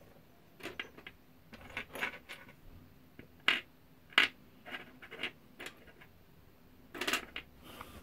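Small brass and copper scrap parts clinking and tapping as they are handled and set down on a wooden workbench: scattered light clicks, the loudest about three and a half and four seconds in, with a small cluster near the end.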